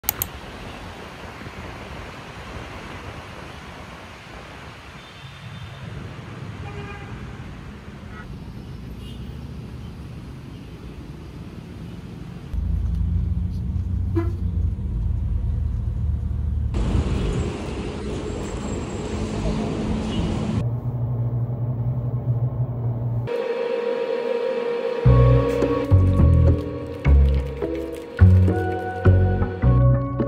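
Road traffic noise heard from a vehicle in traffic, with a faint horn toot; after a cut about twelve seconds in, a louder low engine rumble takes over. Music with a beat comes in near the end.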